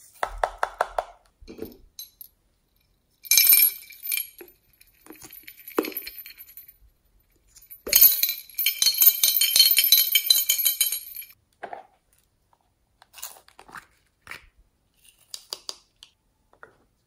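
Plastic sequins and glitter pouring from small plastic jars into a glass dish: a dense patter of tiny clinks. There is a short pour about three seconds in and a longer one from about eight to eleven seconds, with scattered clicks and light knocks from the containers in between.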